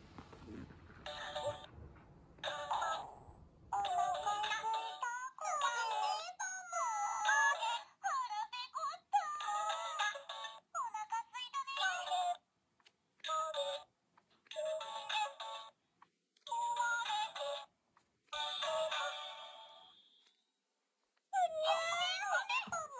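Delicious Party PreCure talking Mem-Mem plush toy, set off by pressing its head, playing a string of short high-pitched electronic voice phrases and sung jingles through its small built-in speaker. There are brief pauses between the clips and a short silence near the end.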